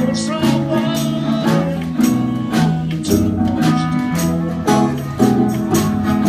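Live band jamming: guitars and bass guitar playing chords and bass lines over drums keeping a steady beat of about two hits a second.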